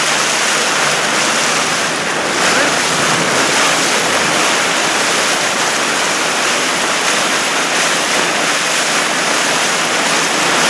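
Steady rush of open water with wind buffeting the microphone, a loud, even hiss with no distinct strokes.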